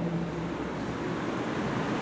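A steady, even hiss of room noise in a pause between spoken sentences, with no voice.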